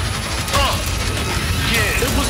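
Film sound effect of a car transforming into a robot: a rapid run of mechanical clicking, ratcheting and short whirring glides of shifting metal parts over a low rumble.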